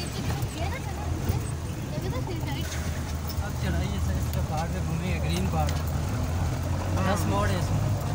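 Jeep engine running steadily under load on a rough gravel mountain track, heard from inside the cab, with short rising and falling voice-like calls over it, clearest near the end.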